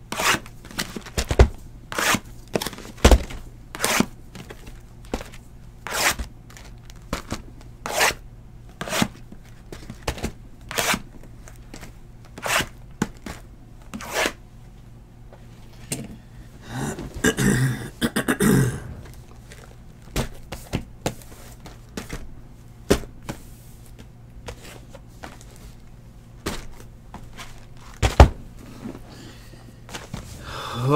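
Cardboard boxes of trading cards being handled and set down on a desk: a run of sharp knocks and thunks with scraping, about one or two a second. A longer stretch of rustling comes a little past the middle, and one loud knock comes near the end.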